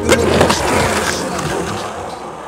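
Skateboard on concrete: a sharp clack just after the start, then the wheels rolling, fading away.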